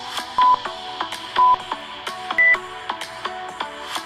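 Interval-timer countdown beeps over background music. Two short low beeps come a second apart, then a higher beep a second later, which signals the end of the rest and the start of the work interval.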